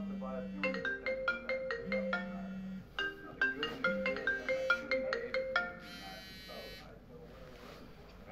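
Mobile phone ringtone: a marimba-like melody played twice, cutting off about six seconds in as the call is answered, followed by a brief hiss.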